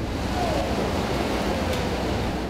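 Steady rushing rumble of a tunnel boring machine cutting through the GFRP-reinforced concrete soft-eye wall of a shaft, with soil and broken concrete pouring down.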